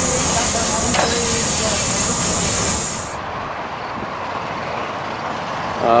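Steam hissing loudly from around a fitting low on Santa Fe 3751, a 4-8-4 steam locomotive. The hiss cuts off suddenly about three seconds in, leaving a quieter, even background noise.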